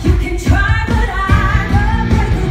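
Women singing a pop-style musical theatre number into microphones over an amplified band with a steady bass beat.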